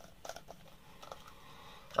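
A few faint clicks and light handling noise of plastic spray bottles being picked up and turned in the hand.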